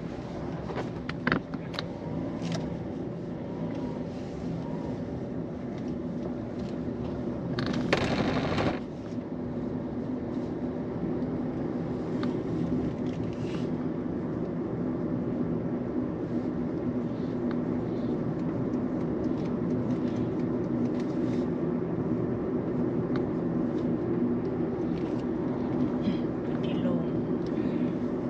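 Engine and road noise inside a car's cabin while driving along a village road, a steady low drone with a few light knocks early on and a louder rushing surge about eight seconds in.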